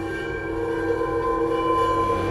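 Logo-reveal sound effect: a sustained chord of several steady droning tones over a low rumble, slowly swelling in loudness as it builds toward a hit.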